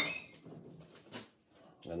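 A glazed ceramic pot set down with a sharp clink that rings briefly, followed by quieter handling of pottery and a smaller knock about a second later.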